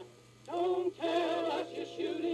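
An old Columbia record playing a woman singing with band accompaniment. After a short gap at the start, sung phrases resume about half a second in.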